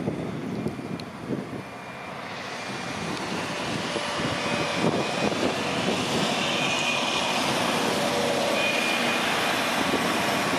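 Heavy diesel equipment running, the noise building over the first few seconds into a steady loud drone as a compact wheel loader with a snow pusher drives close by.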